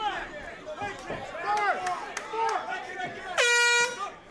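Voices shouting from ringside, then about three and a half seconds in a loud air horn blares for about half a second on one steady pitch and cuts off: the signal that the round has ended.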